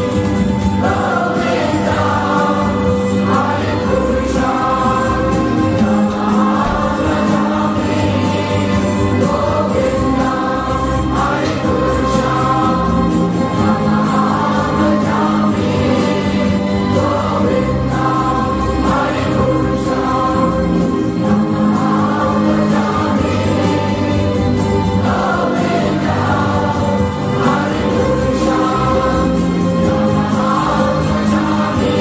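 Devotional music: a choir singing over steady instrumental accompaniment.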